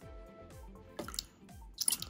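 Small water splashes and drips as a tiny plastic toy bottle is squeezed and released in water, drawing water in. They come in two short clusters, about a second in and near the end, over soft background music.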